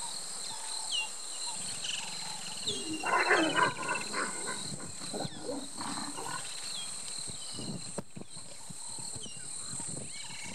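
Leopards growling during mating, loudest about three seconds in, with shorter growls around five to six seconds.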